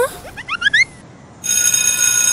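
School bell ringing: it starts about one and a half seconds in as a loud, steady, continuous high ring that signals the end of recess.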